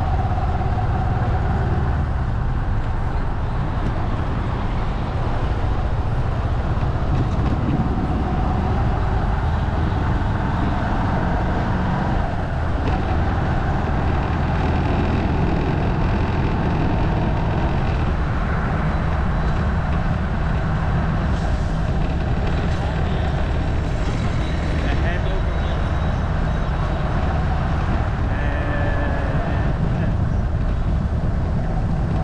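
Motorbike engine running steadily under way, with wind rumble and road noise on a GoPro camera mounted on the bike.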